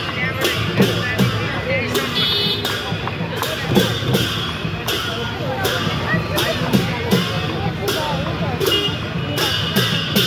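Dhime barrel drums beaten in a steady processional rhythm for a Lakhe dance, about two to three strikes a second, over the chatter of a street crowd.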